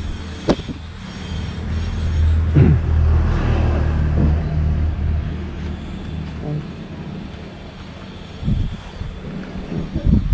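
Street traffic: a motor vehicle's engine rumbles past, building about a second and a half in and loudest from about two to five seconds in, then fading. A few brief voice fragments come through.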